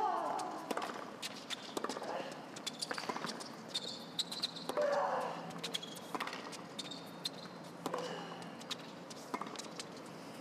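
Tennis rally on a hard court: racket-on-ball strikes and bounces as sharp repeated clicks, with short grunts from the players on their hits, the loudest near the start at the serve and again about 5 s in. Brief shoe squeaks are heard between shots.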